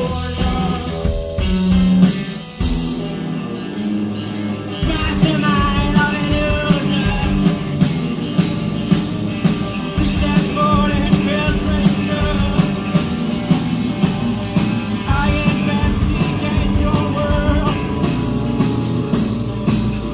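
Live rock band playing loud, with electric guitars, bass guitar and drums. The drums and cymbals drop out about two and a half seconds in and come back in with a steady beat a couple of seconds later.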